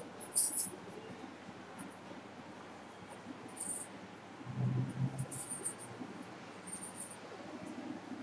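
Pen scratching on paper in short, separate strokes as words are written.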